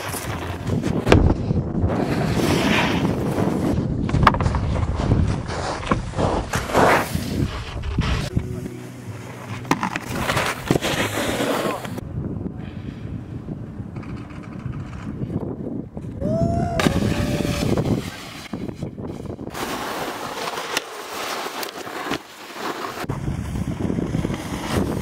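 Snowboard base and edges scraping and sliding over hard spring snow and along a rail, in a run of short clips that break off abruptly one after another.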